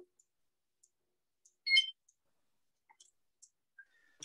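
Near silence broken by one short clink with a brief ring, a hard object knocking, about two seconds in, and a few faint ticks.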